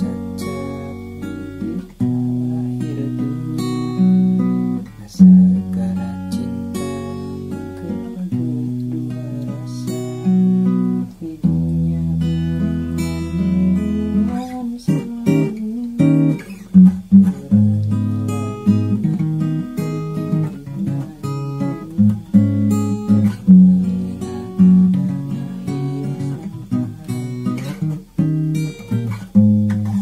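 Steel-string acoustic guitar with a capo, played in chords such as F#–B and E–D#, with the chord changing every second or two and single notes picked between the changes.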